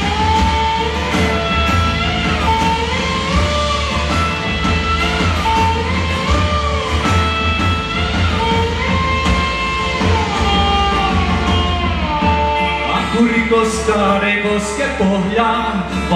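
A live rock band playing: drum kit and bass guitar keep a steady beat under a melody of held notes that glide from one pitch to the next. The sound grows busier in the last few seconds.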